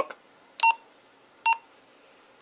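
A Motorola MTS2000 handheld radio gives two short, identical beeps about a second apart as its push-to-talk and side buttons are pressed in channel test mode. These are the radio's key-press tones confirming each switch.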